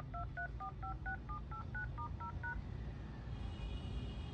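Sharp UX-D57CW fax-telephone dialing out with touch-tone (DTMF) beeps: twelve tone pairs, about five a second, for 1 2 3 4 5 6 7 8 9 * 0 #, stopping about two and a half seconds in, over a low hum.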